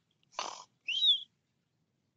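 A bird calling: a short rasping note about half a second in, then a short high chirp about a second in.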